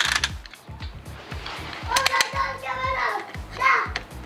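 Utility knife scoring a vinyl floor plank, a fast run of short scraping strokes. A child's high voice comes in about halfway through and is the loudest sound.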